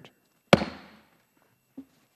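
A single sharp gavel strike on the dais about half a second in, ringing out briefly, adjourning the committee hearing.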